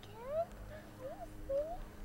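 A toddler making short, rising, high-pitched vocal sounds, three or four in quick succession.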